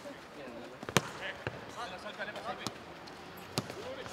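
A football being kicked in a passing drill on grass: four sharp kicks at uneven intervals, the loudest about a second in.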